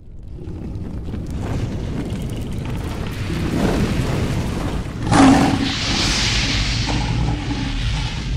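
Cinematic intro sound effects: a low rumble that builds steadily, a sharp boom about five seconds in, then a hissing, fiery rush over the rumble.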